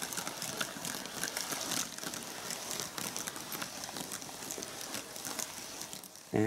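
Several glass marbles rolling down a zigzag marble run folded from paper: a continuous papery rolling noise with many small clicks as the marbles strike the paper walls at the turns and knock against each other in the catch tray.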